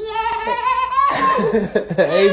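A baby's excited high squeal, held and rising in pitch for about a second, then breaking into laughter.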